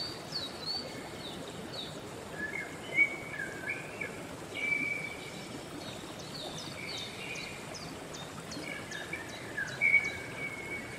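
Several songbirds chirping and whistling over the steady rushing of a flowing stream, with a quick run of short high chirps near the end.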